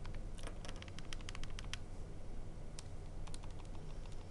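Keys being pressed on a TI-89 Titanium graphing calculator: a quick run of about a dozen clicking keypresses in the first two seconds, then a few single presses.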